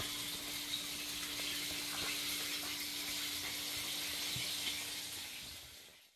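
Steady hissing noise with a faint constant hum underneath and a few faint clicks; it starts suddenly and fades out at the end.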